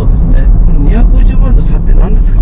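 Nissan Fairlady Z NISMO's twin-turbo 3-litre V6 and road noise heard from inside the cabin while driving: a steady low drone under a man's talking.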